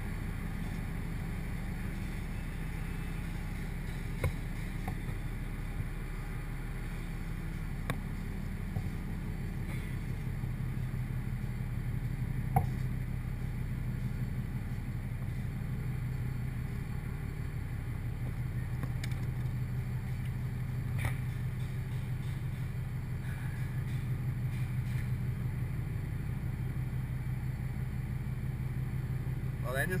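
A steady low machinery hum with a fast, even pulse on the drilling rig, broken by a few short sharp clicks and knocks, the loudest about twelve seconds in.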